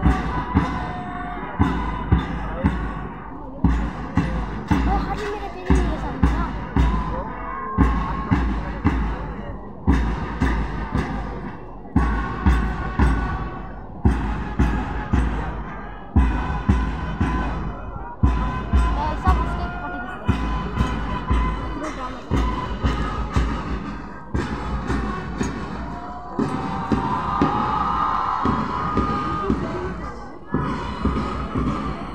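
Marching band playing a march: drums beat a steady rhythm with a heavy accent about every two seconds, under a faint melody line that grows louder near the end.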